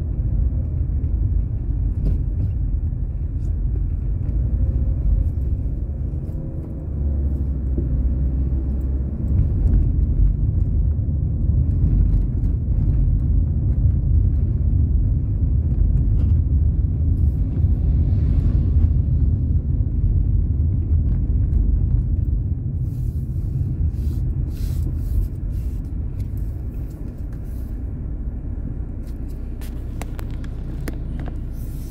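Low, steady rumble of a car's engine and tyres heard from inside the cabin while driving slowly in town traffic, a little louder in the middle and easing toward the end.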